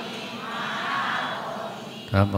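Many voices reciting together in unison, blurred into one chant-like sound.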